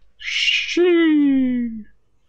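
A short hissing rush, then one long vocal cry that falls steadily in pitch for about a second before stopping.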